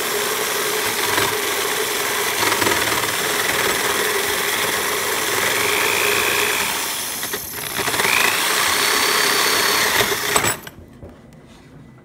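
Skil jigsaw running while cutting a notch into a piece of bamboo. The saw dips briefly a little past halfway, then stops suddenly about ten and a half seconds in.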